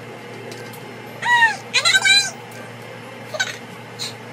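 A woman's high-pitched wordless vocal sounds, two short ones falling in pitch a little past a second in and a smaller one near the end, over a steady background hum.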